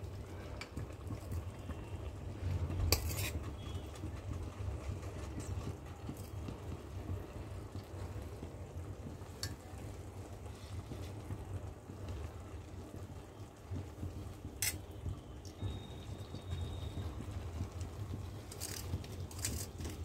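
Steel slotted spoon spreading cooked rice in a stainless steel pot: a soft scrape and rustle of rice, with a few sharp clinks of metal on metal. A low steady hum runs underneath.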